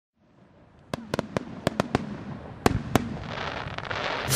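Aerial fireworks shells bursting in a quick irregular series of about nine sharp bangs, followed near the end by a rising hiss with faint crackling.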